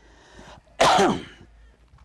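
A man coughs once, a short loud burst about a second in that falls away quickly.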